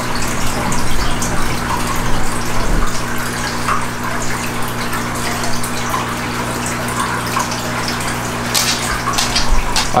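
Water running steadily, with a low steady hum beneath it.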